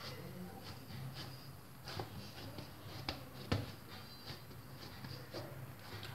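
Hands pressing and patting the edges of a stuffed flatbread on a stone countertop: faint soft handling sounds with a few light knocks, the sharpest about three and a half seconds in.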